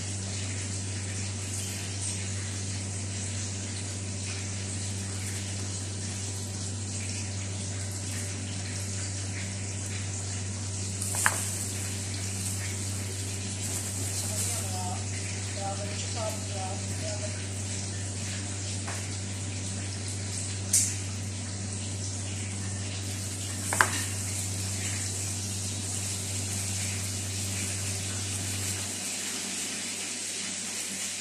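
Knife blade clicking sharply against a plastic cutting board three times while strawberries are sliced. Behind it runs a steady low hum and hiss that cuts off near the end.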